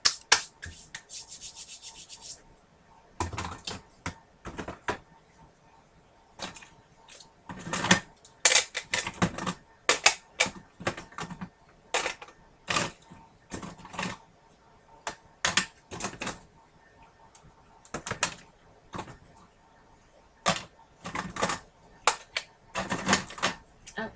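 Hard plastic craft supplies, ink pads among them, being rummaged through and knocked together in irregular bursts of clicks and clatter, with a fast rattle in the first two seconds: a search for a green ink pad.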